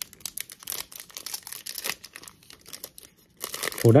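Trading card pack's foil wrapper being torn open and crinkled by hand: a run of quick crackles and rips, busier near the end.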